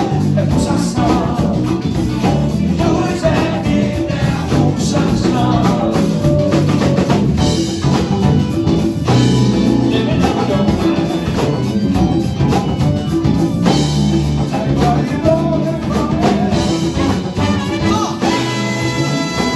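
Live band playing a funk-soul song: a lead singer over a horn section of trumpet, saxophone and trombone, with drum kit, bass, electric guitar and keyboard.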